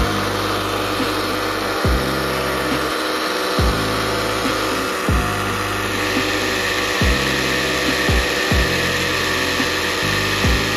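Countertop blender motor running steadily, blending a liquid yogurt drink of mint, garlic, ice and water. Background music with deep bass notes that drop in pitch, about one every one to two seconds, plays alongside it.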